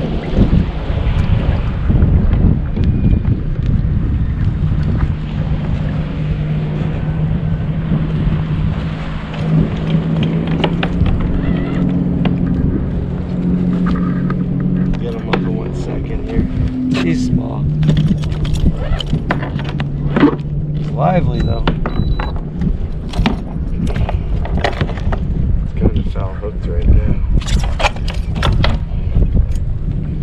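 Wind buffeting the microphone over open water, with a low steady hum that shifts in pitch now and then. Scattered clicks and knocks come in the second half.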